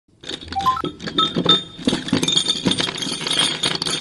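Loose steel bearing balls clinking and rattling against one another and against the steel rings of a large ball bearing as they are handled and fed into it, with a few short ringing notes in the first second and a half.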